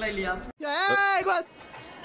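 A man's speech cuts off abruptly, then a single drawn-out bleat follows, about a second long, its pitch rising and then falling.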